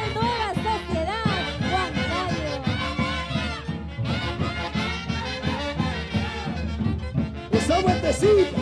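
Live Santiago dance music from a Huancayo orchestra of saxophones and brass over a drum beat, the horns playing short rising-and-falling phrases.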